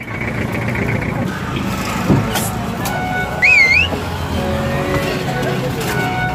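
Street traffic with people's voices and, about halfway through, a short warbling whistle that rises and falls in pitch.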